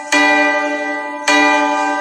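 Backing music playing two bell-like sustained chords, each struck suddenly and left to ring down, about a second apart.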